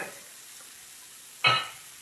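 Bacon strips sizzling on an electric griddle, a steady frying hiss. A brief pitched sound cuts in about a second and a half in and fades quickly.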